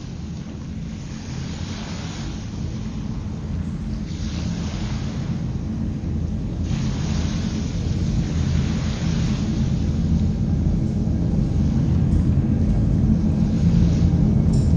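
Opening of an ambient track: a steady low drone under washes of noise that swell and fade every two seconds or so, slowly growing louder.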